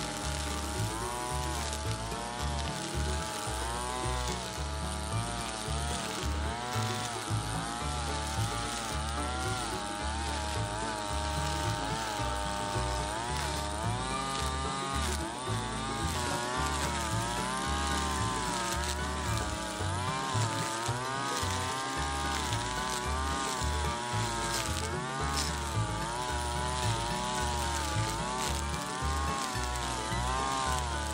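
Backpack brush cutter's small engine running throughout, its pitch rising and falling every second or two as the spinning nylon-line head is worked through grass and weeds, over background music.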